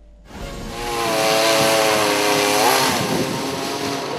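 Chainsaw running at high revs while pruning tree branches. It starts about a third of a second in, and its engine note rises briefly near three seconds in.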